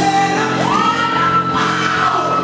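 A man singing loudly into a microphone over backing music. About half a second in, his voice slides up into one long held high note.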